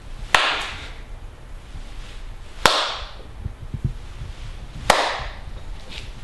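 Three sharp impacts, about two and a half seconds apart, each with a short ringing tail.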